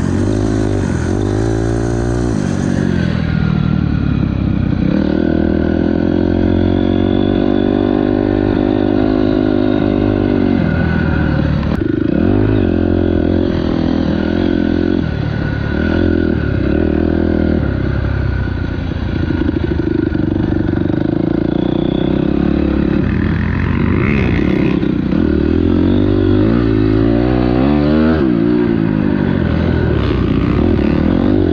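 Dirt bike engine heard from the rider's seat, revving up and down as it accelerates, shifts and backs off. Its pitch rises and falls over and over, at times holding steady for several seconds.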